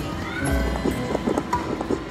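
Cats Hats and More Bats slot machine playing its bonus-spin music. A low thud comes about half a second in, then a quick run of short knocks as the reels land one after another.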